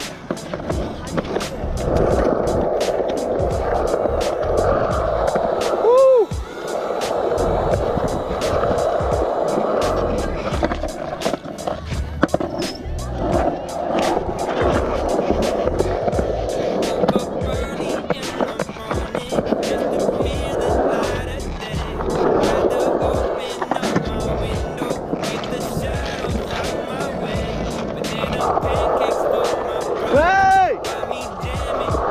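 Skateboard wheels rolling and carving on a concrete skatepark bowl, heard from the board itself, with a steady rolling rumble and frequent sharp clicks as the wheels cross joints and cracks. About six seconds in there is a brief rising-and-falling squeal.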